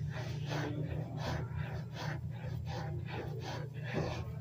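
A man breathing hard and fast from the exertion of push-ups, short breaths about two to three a second.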